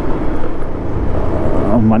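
Bajaj Pulsar 150 single-cylinder motorcycle engine running steadily while riding at road speed, with a heavy low wind rumble on the camera microphone.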